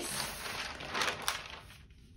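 Tracing-paper pattern pieces rustling and crinkling as one sheet is slid and smoothed flat over another, with a few sharper crackles about a second in, then fading.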